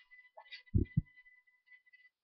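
Two dull low thumps about a quarter second apart, a little under a second in, over a faint steady high-pitched whine.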